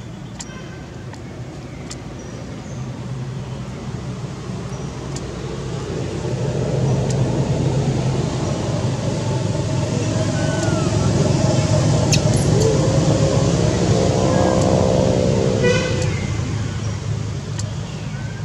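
A motor vehicle's engine passing by: a low drone that grows louder over several seconds, is loudest in the middle, and fades again near the end.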